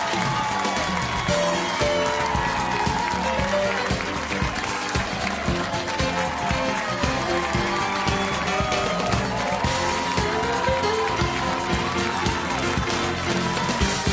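Live studio band playing an upbeat number with a steady drum beat, keyboard and melody lines, with some audience applause underneath.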